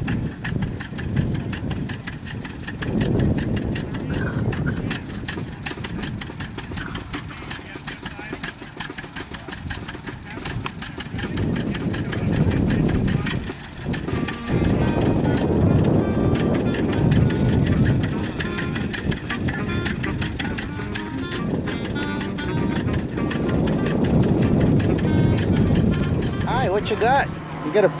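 Vintage farm tractor engine running at idle with a steady, rapid exhaust beat.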